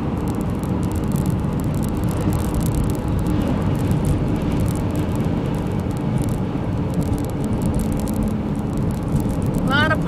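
Steady low road noise of a car driving at road speed, heard from inside the cabin.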